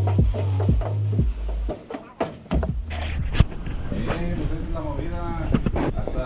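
Background music with a heavy bass beat for about the first two seconds. After a cut, a cat gives drawn-out meowing calls that rise and fall in pitch.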